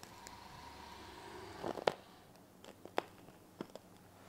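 Jaco robotic arm's motors giving a faint steady whine for about the first second as the arm moves, followed by a handful of sharp clicks, the loudest about two seconds in.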